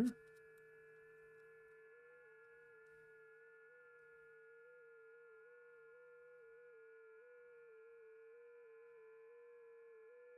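FT8 digital-mode signal from WSJT-X: a faint steady tone that hops up and down in small pitch steps, the computer sending its automatic reply in an FT8 contact.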